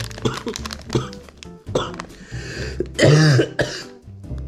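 A man coughing several times, with the loudest cough about three seconds in. Background music plays underneath.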